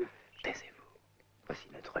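Whispered speech: a few short, hushed words with a brief pause between them.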